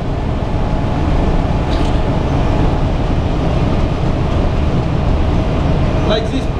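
Ship's engine-room machinery running: a loud, steady mechanical drone with a faint constant hum above it.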